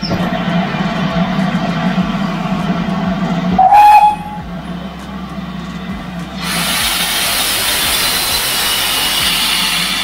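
Steam locomotive letting off steam from its cylinders: a loud, steady, pitched blowing sound, broken by a brief, louder, rising whistle-like note about four seconds in. From about six and a half seconds a loud, even hiss of escaping steam takes over.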